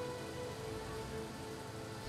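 Faint background music of steady held notes over a constant hiss.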